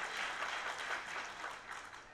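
Audience applauding, with fast light clapping that fades away.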